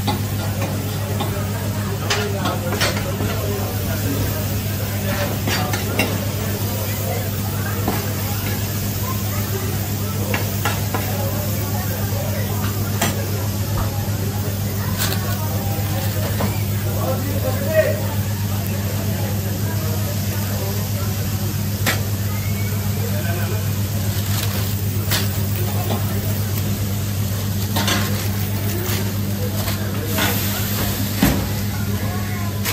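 Tantuni meat frying in oil on a wide shallow pan, a steady sizzle with scattered sharp clicks of metal utensils against the pan. A steady low hum runs underneath.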